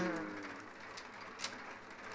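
A voice trailing off on a drawn-out word, then a quiet stretch with one faint sharp click about one and a half seconds in: a mahjong tile set down on the table.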